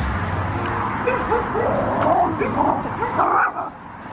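Small Chihuahua-mix dog giving a string of short, high yips and whines, starting about a second in.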